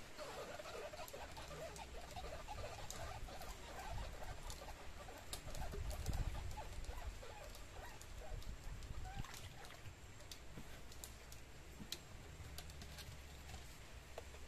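Faint background ambience: a low steady rumble with small clicks scattered throughout, and faint chirping in the first few seconds.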